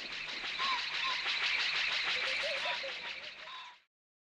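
Field ambience of insects trilling in a dense, rapidly pulsing chorus, with a few short bird chirps. It cuts off abruptly near the end.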